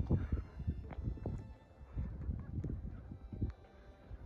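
Wind buffeting the microphone in uneven gusts of low rumble, with a few faint knocks.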